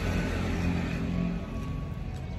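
Motor traffic: a low, steady vehicle-engine rumble with a faint hum that eases off in the second half.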